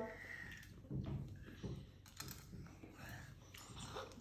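Quiet handling at a table: faint small clicks and scrapes of a metal spoon against a dragon fruit and its plate, with soft low knocks about one and one and a half seconds in.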